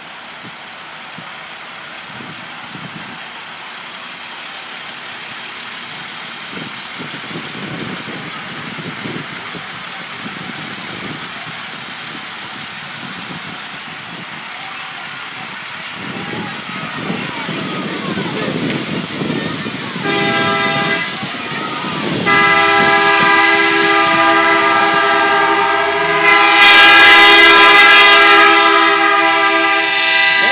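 School buses running, a steady engine rumble, then from about twenty seconds in their horns honking, several at once in a long held chord that grows louder and peaks near the end.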